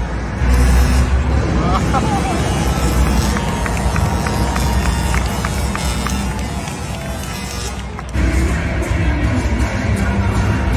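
Bass-heavy music from an arena sound system, played loud over crowd noise. The bass eases off about seven seconds in and comes back hard about a second later.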